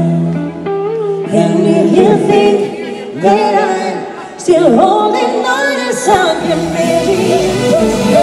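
Live pop vocal group, male and female voices, singing in harmony into microphones with an acoustic guitar behind them, including a sung "oh yeah"; the voices thin briefly about four seconds in, then swell back to full.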